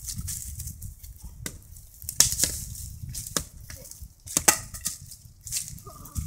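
Dry twigs and leaf litter crunching and snapping on a woodland floor in a run of irregular sharp cracks, loudest about two seconds in and again a little past four seconds.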